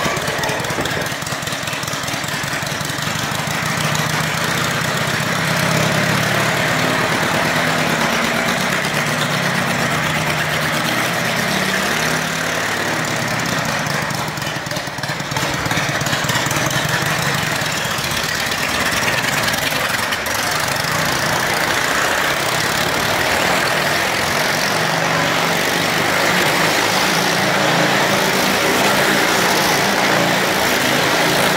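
Motorcycle engines running and revving inside a wooden Wall of Death drum, a loud, steady engine note that builds over the first few seconds and wavers as the throttles are blipped.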